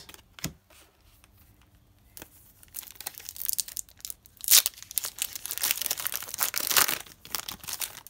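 A foil-lined trading-card pack crinkling and tearing as it is ripped open by hand. The crackle builds from about two seconds in and is loudest in the second half. Before it there are a few light clicks of cards being handled.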